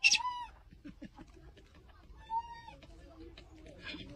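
Macaque monkey giving two short high calls, one right at the start and one a little past the middle, with faint clicks between.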